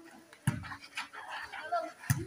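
A volleyball struck by a player's hands or forearms during a rally: one sharp smack about half a second in, a lighter tap about a second in, with players' voices calling out.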